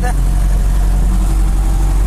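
Truck engine running steadily with a low drone, heard from inside the cab while driving.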